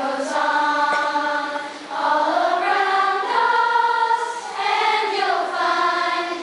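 Large children's choir singing in long held notes, with brief breaks between phrases about two seconds in and again past the middle.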